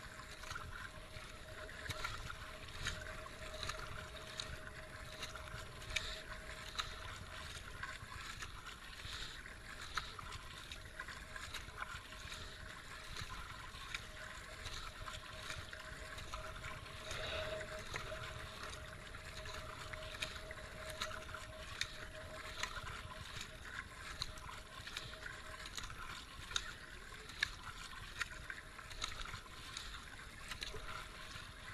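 Kayak paddle strokes dipping and splashing at a steady, regular pace, with water washing past the hull of a moving kayak. A faint steady tone sits underneath.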